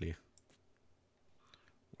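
A few faint, sharp computer mouse clicks in the first half second, followed by a soft brief hiss about a second and a half in.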